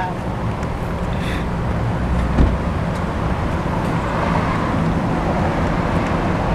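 A steady low engine hum under traffic noise that swells and fades as a vehicle passes, with one short thump about two and a half seconds in.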